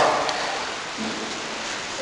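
A pause in a man's talk, filled by a steady hiss of background noise, with the echo of his last word dying away at the start. A faint, brief voice comes about a second in.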